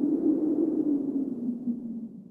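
Low drone of a logo intro sound effect, sinking slightly in pitch as it begins to fade out after a tyre-squeal sound.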